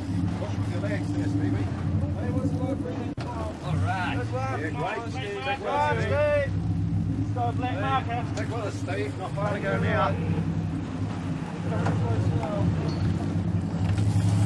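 Sportfishing boat's engines running with a steady low drone. Untranscribed voices call out from about 4 to 10 seconds in.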